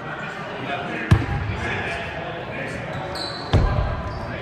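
Basketball bouncing twice on a hardwood gym floor, about two and a half seconds apart, each a sharp thud, over the chatter of players and spectators echoing in a large gym.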